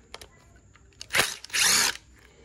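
Cordless Bosch driver spinning briefly to back out the screw on a Walbro WTA carburetor's cover: a short blip about a second in, then a half-second run near the end.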